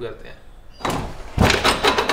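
Clothing rustle and a dull thump as a person swings a leg over and sits down on a parked motorcycle. The rustle starts about a second in and the thump comes near the end.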